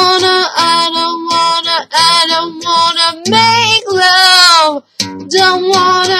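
A girl singing without clear words: a run of held notes that bend in pitch, with short breaks between them.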